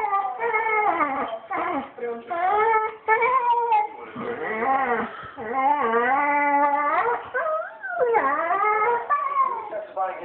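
Dog crying: a near-continuous run of long, wavering whines and whimpers that bend up and down in pitch, one after another with only short breaks. It is the separation distress of a dog missing its absent owners.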